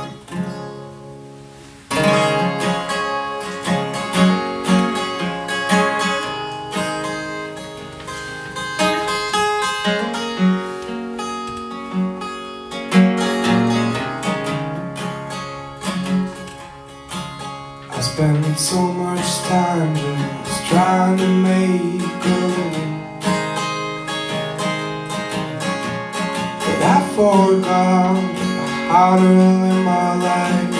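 Acoustic guitar strummed and picked as a song's introduction, coming in about two seconds in and then playing steadily.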